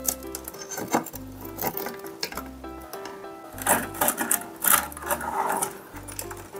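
Light background music with a repeating bass pattern, over a metal spoon scraping and prying a crisp sheet of microwaved nurungji (scorched rice crust) off a ceramic plate, the crust crackling in several short bursts, busiest in the second half.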